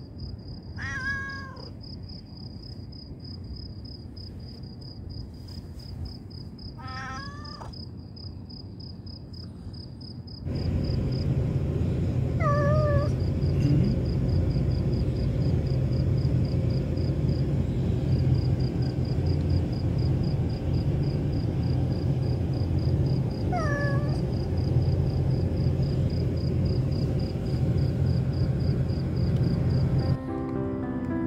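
Stray cats meowing four times, several seconds apart. The first two calls come from a calico begging for food. Crickets chirp steadily throughout, and a louder low rumble comes in about ten seconds in.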